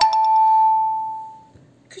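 Two-note ding-dong chime, a higher note then a lower one, that rings out and fades away over about a second and a half.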